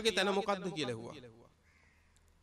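A Buddhist monk's voice through a microphone, drawing out a word in preaching cadence, its pitch held and then falling away until it stops about a second and a half in.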